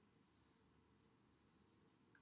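Near silence, with faint strokes of a dry-erase marker writing on a whiteboard.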